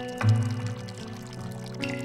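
Music score with sustained, held notes over a thin stream of water pouring from a pipe into a stone basin.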